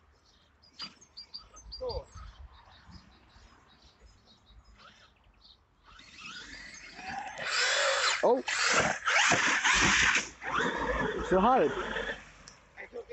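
Electric RC monster truck driven at full throttle, its motor whining as it comes in from about six seconds, then ploughing into a large puddle with a loud rush of splashing water for several seconds. Short shouted exclamations come over it near the end.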